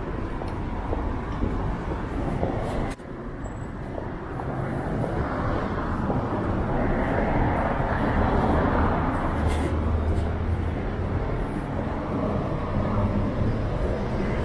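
City street ambience dominated by road traffic on the adjacent street. A vehicle swells louder as it passes in the middle, with a low engine hum. The sound dips briefly about three seconds in.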